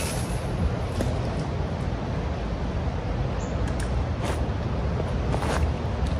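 A fishing rod being cast: a quick swish as the line is whipped out at the start, over a steady low outdoor rumble. A couple of short, sharp sounds come near the end.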